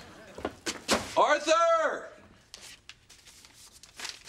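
Brown paper grocery bag rustling and crinkling as groceries are taken out, with a short vocal sound, rising then falling in pitch, between one and two seconds in.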